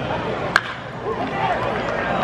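A wooden baseball bat makes weak contact with a pitched ball: one sharp crack about half a second in, putting the ball into play as a slow roller in front of home plate.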